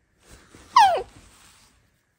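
A 10-month-old baby's short high squeal that glides steeply down in pitch, with soft breathy sounds around it.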